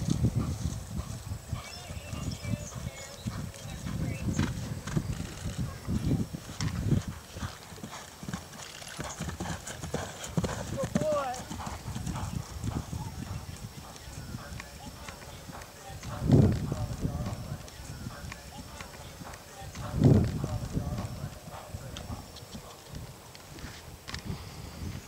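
Hoofbeats of an event horse cantering and galloping on grass turf, a rhythmic run of dull thuds that is strongest in the first third. Two louder low thuds come about two-thirds of the way in and again a few seconds later.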